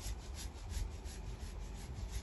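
Granular organic lawn fertiliser rattling in a round plastic shaker tub as it is shaken out over a lawn: a quick, even run of short rasping strokes, over a low rumble.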